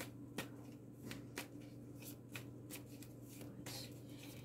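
A deck of tarot cards being shuffled by hand: faint, irregular flicks and snaps of card against card.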